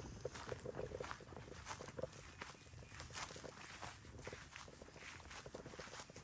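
Footsteps through grass and brush: a steady run of soft, irregular crunches as a person walks.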